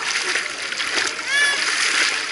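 Continuous splashing of pool water as a child kicks with dolphin kicks and pulls through the water on a float, with one short high-pitched child's cry about a second and a half in.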